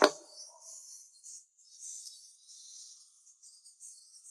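A single sharp knock at the very start, as of a small hard object set down or bumped on a surface, ringing briefly. After it there is only a faint, uneven high hiss.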